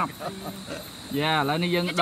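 A cricket chirring steadily in the background. About a second in, a person's voice comes in with a long, drawn-out call.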